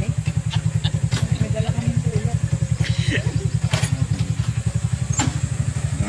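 Small motorcycle engine idling with a fast, even, low putter that holds steady throughout.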